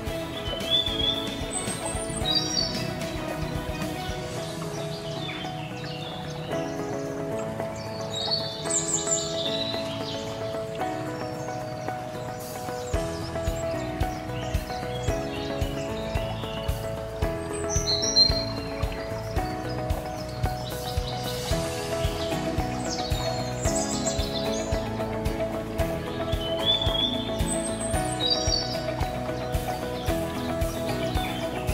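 Instrumental background music with a steady beat, with bird chirps mixed in that recur every few seconds.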